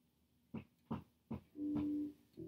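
1972 Fender Precision bass fingerpicked, heard as the bare unamplified string sound: three short, muted, percussive notes about half a second apart, then a note that rings on near the end.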